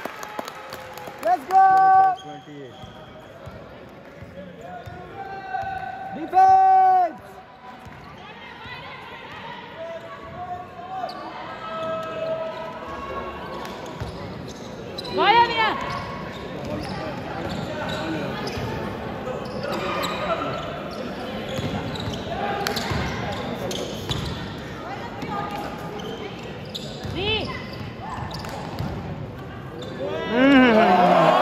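Live basketball play on an indoor court: the ball bouncing on the floor and players' footfalls and scuffs, with a couple of short loud shouts in the first several seconds.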